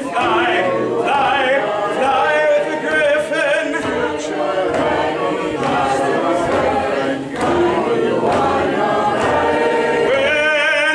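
Unaccompanied singing, a cappella, with long held notes that waver in vibrato.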